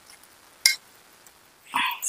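A single sharp clink of a metal spatula against a metal cooking pot, about two-thirds of a second in, over faint hiss. A voice starts near the end.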